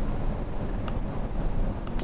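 Steady low rumble of room or microphone noise, with two faint clicks about a second apart; the second is a laptop click opening a browser menu.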